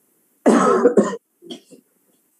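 A man coughing: one loud, rough cough about half a second in, followed by two short, quieter ones. It is the cough of a bad flu with severe laryngitis.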